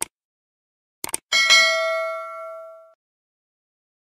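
Sound effect for a subscribe-button animation: a mouse click, then a quick double click about a second later, followed by a bright notification-bell ding that rings on and fades out over about a second and a half.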